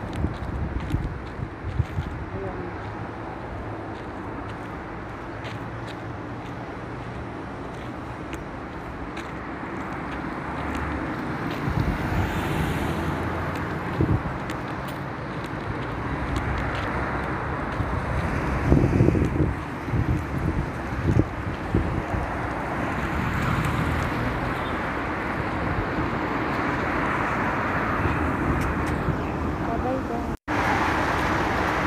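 Road traffic: cars passing on a nearby road, a steady wash of noise that swells louder about halfway through, with a few short knocks on the microphone.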